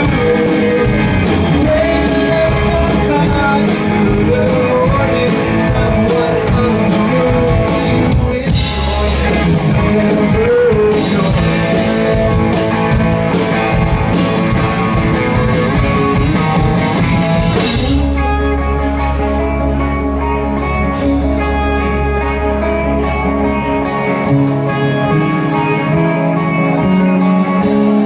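Rock band playing live: a singer over guitars, bass and drums. About 18 seconds in, the drums and cymbals drop away, leaving guitar and a held low bass note.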